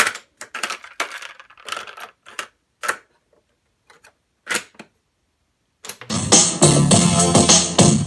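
Clicks and clacks from a Sears boombox's piano-key cassette controls and cassette door being worked by hand, as separate sharp snaps with silence between. About six seconds in, music starts playing loudly through the boombox's speakers.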